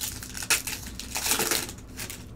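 A foil trading-card pack crinkling as it is torn open by hand, with a sharp crackle about half a second in and a longer rustling burst around the middle.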